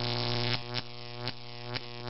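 Electric buzz of a neon sign lighting up, a steady mains-type hum with several sharp crackles of sparking through it.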